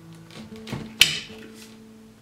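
The plastic wand of a PrettyCare W300 cordless stick vacuum snapping into the handheld body: a few soft plastic knocks as the parts are pushed together, then one sharp click about a second in as the joint latches. Quiet background music with held notes plays underneath.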